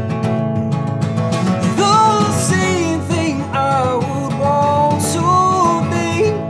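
Acoustic folk music: a steel-string acoustic guitar strummed steadily under a lead melody of held notes that bend down at their ends.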